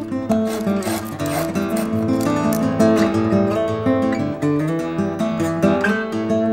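Acoustic guitar playing a tune of picked notes and chords, the notes changing several times a second.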